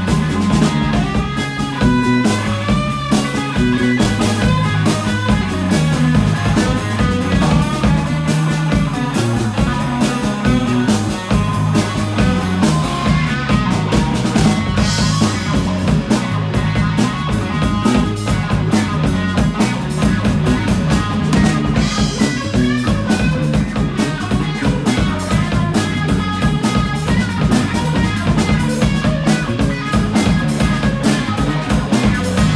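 Live electric blues band playing an instrumental passage with no vocals: electric guitar over bass guitar and a drum kit.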